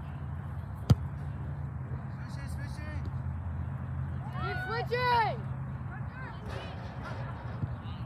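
Distant shouting from players on a soccer pitch, with one call rising and falling about four and a half seconds in and fainter voices earlier. A single sharp knock comes about a second in, over a steady low hum.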